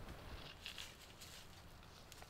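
Near silence: faint outdoor background with a few soft, brief rustles.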